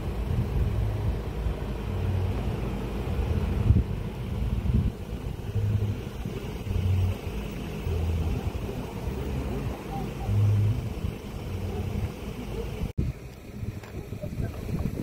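Low, uneven rumble of an idling vehicle engine mixed with wind on the microphone, with faint voices; a brief dropout near the end.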